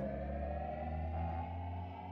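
Intro sound design: a steady low synth drone under a tone that rises slowly in pitch.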